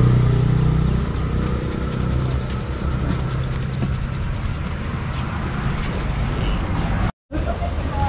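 Road traffic noise, with a nearby motor vehicle engine humming steadily for the first second or two before it fades into the general traffic. The sound cuts out for a moment near the end.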